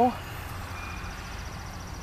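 Outdoor ambience: a steady low rumble with a faint, high-pitched insect trill starting about half a second in.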